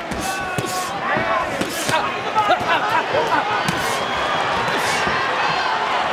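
Ringside sound of a pro boxing bout in progress: gloved punches landing with sharp smacks, several short hissing bursts, and shouting voices from the crowd and corners.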